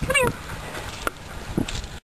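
A goat gives a short, wavering bleat at the start, then there is a sharp click about a second in and soft rustling near the end as the goats pull at leafy branches.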